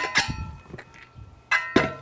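Two sharp metallic clanks about a second and a half apart, each ringing on briefly: the spoked dirt-bike wheel and steel tire spoons knocking on the metal tire-changing stand as the wheel is turned over.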